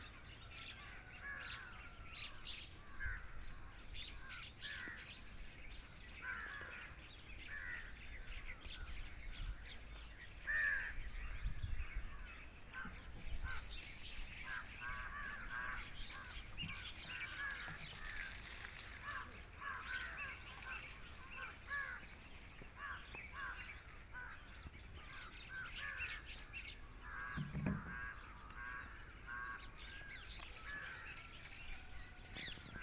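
Birds chirping and calling in open countryside, a steady run of many short calls throughout. A brief low rumble on the microphone, a little before the middle, is the loudest moment.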